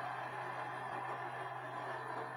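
Faint steady hiss with a low steady hum underneath: the background noise of the recording, with no speech or music.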